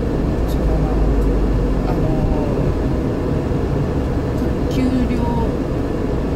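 Steady low rumble of road and engine noise inside a moving light cargo van's cabin.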